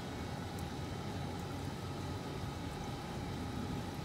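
Steady hum and water noise of aquarium pumps and filtration, with a few faint steady whines above it.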